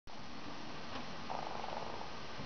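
A horse snorting: a short, rapid fluttering blow through the nostrils, starting a little past halfway, over a steady background hiss.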